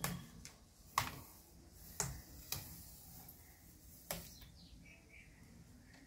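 Five faint, sharp clicks at irregular intervals as a plastic pry tool works the rubber foot strip off a laptop's bottom case.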